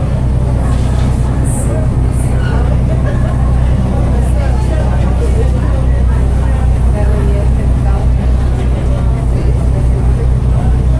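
River boat's engine running with a steady low hum, under the mixed chatter of passengers talking.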